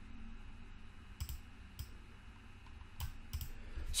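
Four short, sharp clicks at uneven spacing from a computer being worked, heard over faint room noise.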